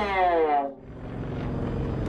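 A pitched sound glides downward through the first second. It gives way to the steady drone of a small single-engine propeller airplane's engine.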